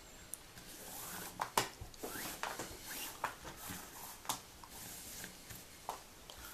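Paracord being worked over and under the strands of a Turk's head on a pinned jig, with a metal fid. The cord is faintly rustling and sliding, with small irregular clicks and scrapes.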